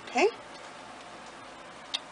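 A brief vocal sound rising in pitch a fraction of a second in, then low room noise with a single click near the end.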